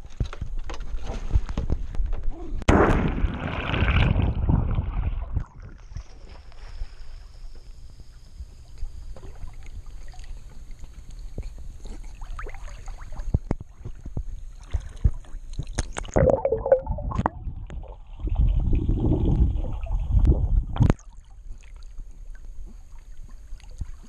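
Pool water splashing and sloshing around a swimming West Highland White Terrier, heard close at the water's surface, with louder stretches of splashing about three seconds in and again near the end.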